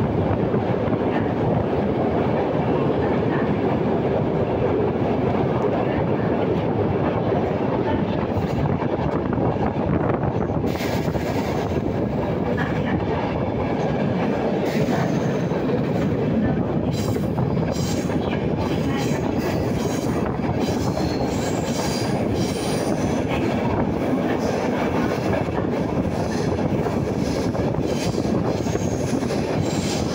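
C6 Tunnelbana metro car running on its track, heard from inside: a steady rumble of wheels on rails. From about eleven seconds in, many short clicks and rattles join it as the car passes over points into the tunnel.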